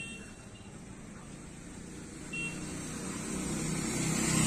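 Quiet outdoor background: a low steady rumble that grows slowly louder, with two brief high beeps, one at the start and one about halfway through.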